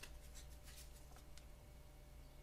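Faint rustle and a few light clicks of a small stack of trading cards being handled, one card slid against the others.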